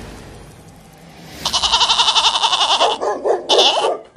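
Goat bleating: a long, fast-trembling bleat starting about a second and a half in, followed by shorter wavering bleats near the end.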